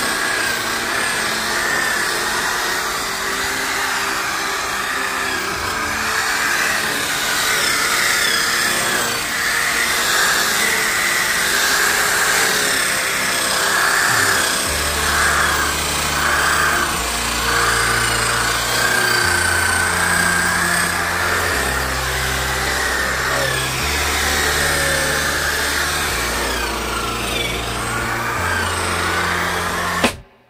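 Electric polisher with a foam pad running steadily as it buffs a bicycle frame. Music plays over it, with a bass line coming in about halfway through.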